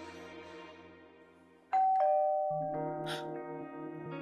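Two-tone ding-dong doorbell ringing once, about two seconds in, a high note then a lower one, over soft background music.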